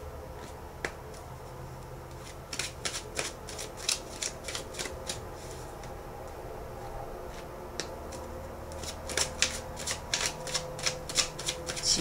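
A deck of tarot cards being shuffled by hand: two runs of quick riffling clicks, one starting a few seconds in and one near the end.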